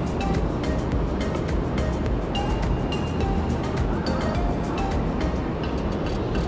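Background music: short, held high notes and a quick clicking beat over a steady low rumble.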